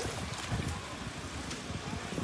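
Wind noise on the phone's microphone: an uneven low rumble under a steady hiss.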